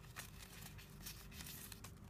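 Faint rustling of origami paper handled and folded backward by hand, with a few soft clicks as the paper is pressed into a crease.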